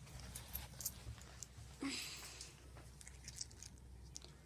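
Faint rustling and handling noise from a phone being carried through a carpeted room, with scattered light clicks and a brief louder rustle about two seconds in.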